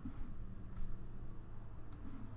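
A single computer mouse click near the end, over a low steady hum.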